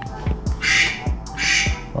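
Thick glue slime squelching twice as a plastic spoon stirs it in a plastic bowl, over background music with a steady beat.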